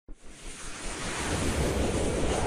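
Rushing, wind-like noise swell of an intro sound effect, with a low rumble under it, building steadily in loudness.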